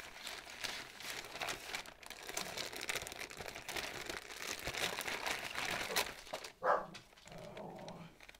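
Clear plastic bags crinkling as they are handled and opened. Near the end a dog barks once, the loudest sound.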